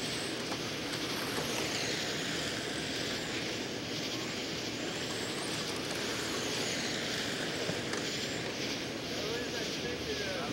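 Electric RC late model race cars with 17.5-turn brushless motors lapping a dirt oval: a steady mix of motor whine and running noise, with faint high whines rising and falling as cars pass.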